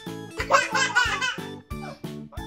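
Background music with a steady beat, and a toddler laughing in a burst from about half a second in, lasting about a second.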